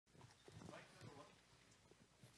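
Near silence: faint room tone with distant murmuring voices and a few soft knocks.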